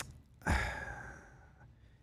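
A man's long sigh into a close microphone: a breathy exhale about half a second in that fades away over about a second, after a brief click at the start.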